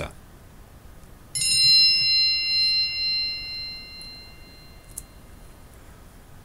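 A single electronic 'bing' chime sounds about a second in, several high bell-like tones together, ringing out and fading over about three seconds. It is the cue to pause and write down an answer.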